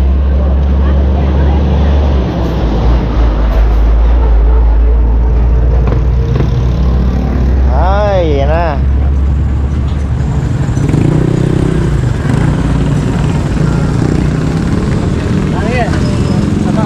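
Motorcycle and tricycle traffic in a busy street, with a steady low rumble in the first half. A short wavering pitched call comes about halfway through.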